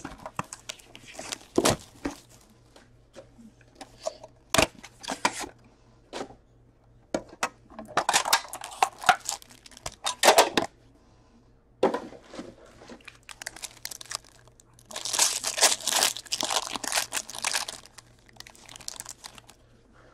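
Hands unpacking a box of Upper Deck Premier hockey cards: a few sharp knocks from the box and its metal tin being handled, then the foil pack wrapping crinkling and tearing in two spells, about eight seconds in and again about fifteen seconds in.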